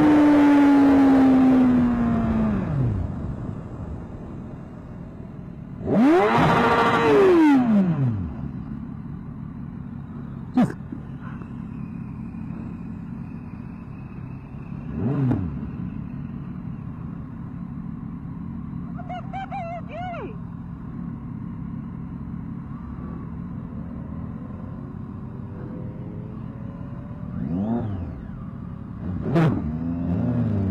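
Motorcycle engine and passing traffic heard through a rider's helmet camera. The engine's pitch falls over the first few seconds, a vehicle passes loudly at about six to eight seconds with its pitch rising then falling, and more vehicles pass near the end.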